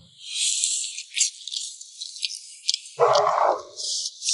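Close-miked eating sounds: a wet sucking slurp as meat is drawn from a grilled garlic lobster half, then scattered sticky clicks of chewing and shell. A short, fuller muffled burst comes about three seconds in.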